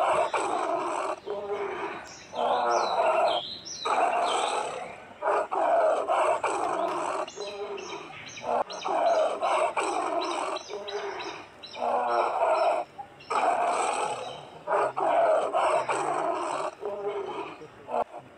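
Bengal tigress growling and calling again and again at her cubs, a stern scolding. The calls come in a long run, each about a second long, with short pauses between.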